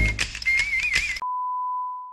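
A busy, noisy burst with a high wavering whistle-like tone for about a second, then cut off by a steady 1 kHz test-tone beep, the tone that goes with colour test bars, fading out at the end.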